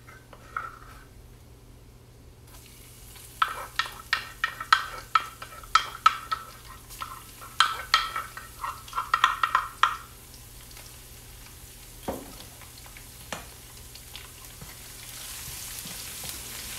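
A metal spoon clinks and knocks repeatedly against a jar and the wok as crushed fresh garlic is scraped into hot oil for a tarka. Near the end a faint sizzle of garlic frying in the oil rises as it is stirred.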